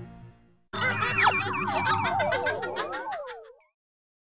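A short synthesized logo sting of warbling, boing-like electronic tones that wobble and glide in pitch over a low steady drone. It starts abruptly about a second in and dies away before the end, just after the closing music has faded.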